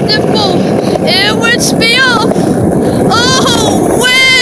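A high voice singing a run of short rising-and-falling notes, over a heavy rumble of wind on the phone's microphone.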